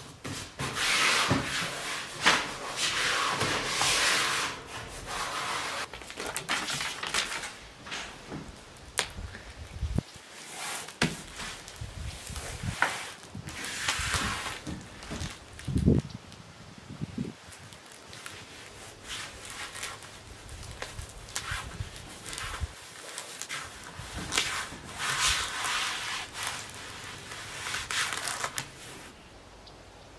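Self-adhered flexible window flashing (sill wrap) being handled, peeled and pressed down around a window sill: bursts of crackling and rustling, with scattered knocks.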